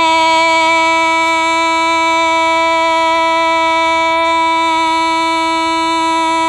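A woman singing Hmong kwv txhiaj (sung poetry), holding one long, steady note.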